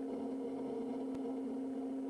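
Kodiak 100's turboprop engine and propeller heard as a steady low drone in the cockpit, at reduced power in the descent.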